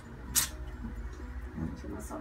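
A small plastic comb pulled through cream-coated, matted hair as a dreadlock is combed out: faint scratching and squishing, with a short sharp hiss about half a second in.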